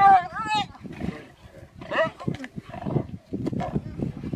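Hyena giving a high, wavering squeal at the start and another cry about two seconds in, amid low growling from lions fighting over a kill.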